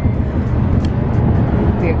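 Steady low road rumble of a moving car heard from inside the cabin.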